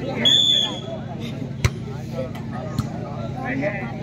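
A referee's whistle blown once, short and shrill, near the start, then a single sharp smack of a volleyball being hit about a second and a half in, over crowd chatter and a steady low hum.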